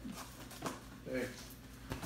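A cardboard box being handled, with a few brief soft knocks and rustles of its flap, under a short spoken "hey".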